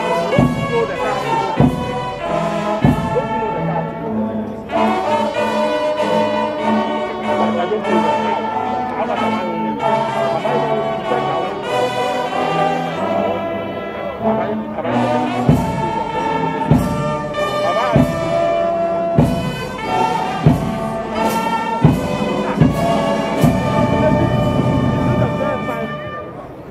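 Brass band playing a ceremonial piece with sustained trumpet and trombone chords; from a little past halfway a drum marks a steady beat about once a second.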